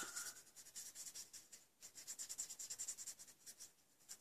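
Faint, quick scratchy strokes of a pen-style brush tip on cardstock, many to the second, as a small area of a stamped flower is coloured in.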